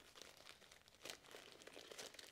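Faint crinkling of a thin single-use plastic shopping bag being handled and folded, with a few soft, scattered crackles.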